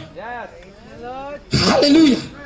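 A man's voice over a microphone: a quieter drawn-out vocal sound that rises and falls in pitch, then a loud exclamation about a second and a half in.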